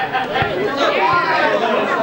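Several voices talking and calling out over one another: the chatter of people at an amateur football match.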